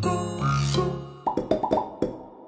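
Bouncy children's cartoon music, then near the end a quick run of about five short, rising cartoon plop sound effects.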